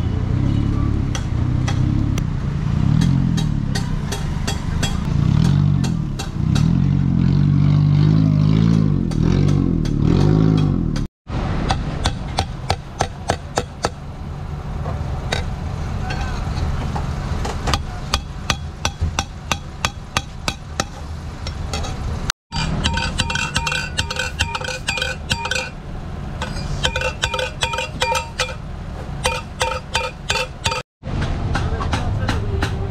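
Road traffic with a car engine passing, then, after a cut, a hammer striking a steel exhaust pipe on an anvil in quick repeated blows. Near the end the blows ring with clear metallic tones as the pipe fitted with the electronic exhaust cutout valve is hammered into shape.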